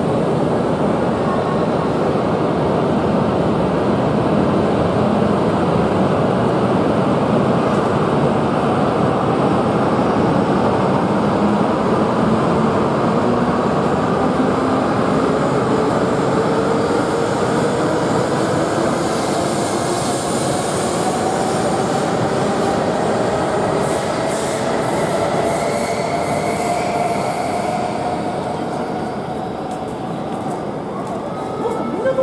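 E6 series Komachi shinkansen pulling out of the platform: a steady rush of wheel and running noise, with the traction motors' whine rising slowly in pitch as it gathers speed. There is a run of light clicks near the end as the sound begins to fade.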